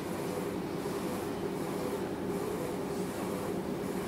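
Steady room hum, a low drone that does not change, with no speech.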